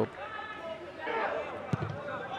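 Faint sound of a football match in a near-empty stadium: distant players' voices, and near the end a single sharp knock of a ball being kicked for a cross.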